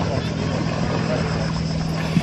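A steady low engine hum over a constant background hiss.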